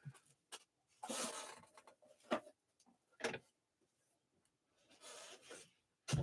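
Faint rustling of trading cards and packs being handled, with two short light taps in the middle.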